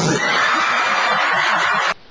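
Loud, steady rushing hiss of a blast of air and white smoke from a stage effect, let off on cue for a fake fart; it cuts off abruptly near the end.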